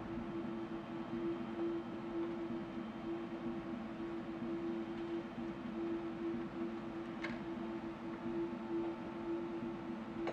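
A low, steady electronic drone with a slight pulse, and a faint click about seven seconds in.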